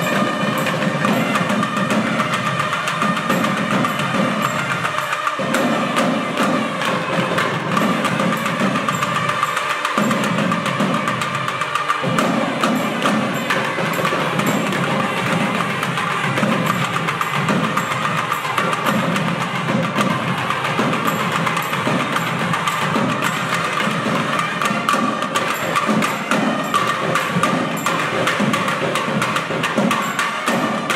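South Indian temple ensemble (periya melam): several nadaswarams play a sustained, reedy melody together over fast, dense thavil drumming with sharp strokes.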